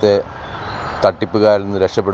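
A man speaking Malayalam over a phone line, with a steady background noise filling the pause of about a second between his phrases.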